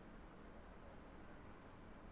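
Near silence with faint room hiss, and a quick double click of a computer mouse about one and a half seconds in.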